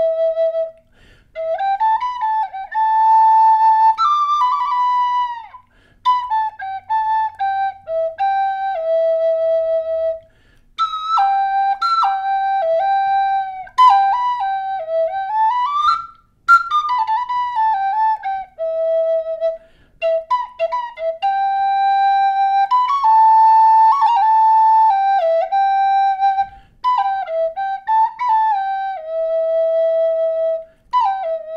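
High Spirits Signature Kestrel Native American-style flute in high E minor, made of quilted maple and walnut, playing a slow solo melody. The phrases are broken by short pauses for breath, with slides between notes and a quick rising run about halfway through.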